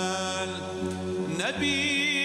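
Kurdish religious qasida chanted with a small ensemble: a long held note with a slight waver over a steady low drone. About one and a half seconds in, the pitch slides up to a new held note.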